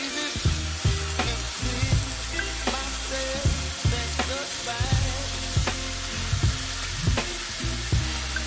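Seasoned lamb shoulder chops sizzling as they are laid into hot olive oil in a cast-iron pan. Background music with a steady beat plays under the sizzle.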